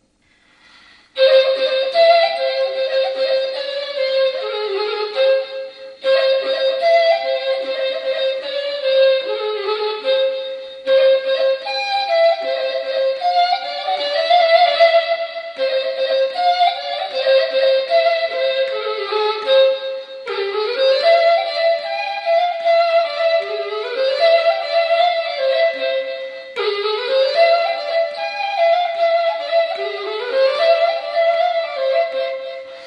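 Chromatic ney, a Persian end-blown reed flute, playing a melody in the Chahargah mode. It comes in about a second in, after a short silence, keeps returning to one held note with short runs and glides around it, and pauses briefly between phrases.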